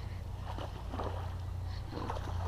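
A steady low hum, with a few short splashes from a hooked largemouth bass thrashing at the water's surface, through the middle and again near the end.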